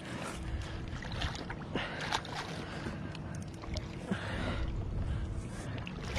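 A large black drum splashing and swirling at the water's surface as it is drawn up to the landing net, a run of short irregular splashes over a steady low rumble of wind and water.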